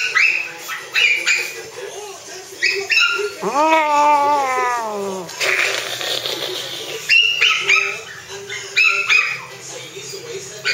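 Pomeranian yipping in short, sharp bursts while digging and scratching at a leather chair seat. Near the middle comes one longer call that rises and then falls in pitch, followed by about a second and a half of scratching.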